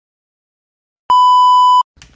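A single electronic beep, a steady high tone lasting under a second that starts and stops abruptly after about a second of total silence.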